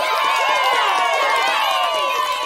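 A group of children cheering and shouting together, many high voices overlapping in one sustained cheer.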